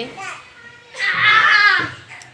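A child's high-pitched voice calling out for under a second, starting about a second in.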